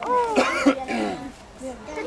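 A man's loud shouted call in the first second, followed by quieter voices.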